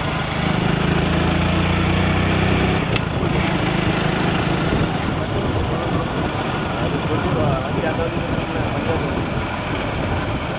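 Motor vehicle engines running close by with road and wind noise, a steady low engine hum through the first half that then fades into the general rumble.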